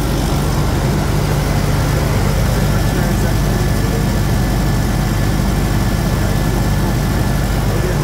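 Diesel engine idling steadily, an even low hum that does not change in pitch or level.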